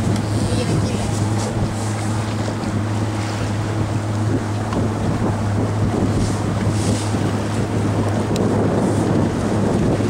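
Motorboat engine running steadily with a low, even hum, with wind buffeting the microphone and water rushing past the hull.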